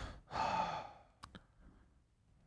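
A man's breathy exhale into a close microphone, like a sigh while thinking, lasting about a second. It is followed by two faint short clicks.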